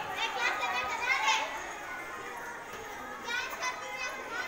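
High-pitched girls' voices, loudest in the first second and a half and again about three and a half seconds in, with music beneath.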